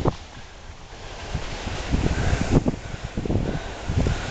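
Wind buffeting the microphone of a hat-mounted camera: uneven low rumbling gusts.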